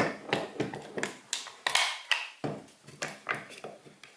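Irregular clicks and knocks as a metal locking face clamp and a plastic Kreg HD pocket-hole jig are handled and adjusted against a 2x4.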